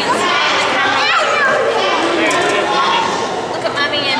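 Crowd chatter of visitors, with children's high voices among it, several people talking at once.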